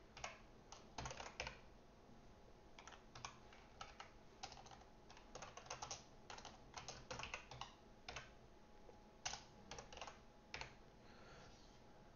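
Faint typing on a computer keyboard: irregular runs of key clicks broken by short pauses.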